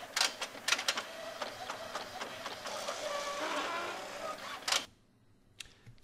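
Epson XP-610 inkjet printer printing a page: several clicks in the first second, then a steady mechanical running of the paper feed and print head, stopping about five seconds in.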